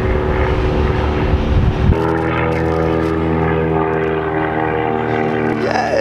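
A steady engine drone, with a deep rumble that gives way to a different set of steady tones about two seconds in.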